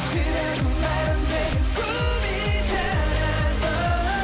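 K-pop dance track with male singing over a steady beat and deep sliding bass notes, played loud through a concert PA.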